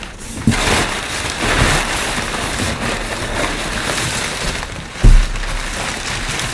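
Crumpled brown packing paper rustling as hands dig through it inside a cardboard box, with a single dull thump about five seconds in.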